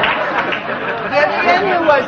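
Studio audience laughing and murmuring, with a voice briefly over the crowd in the second half.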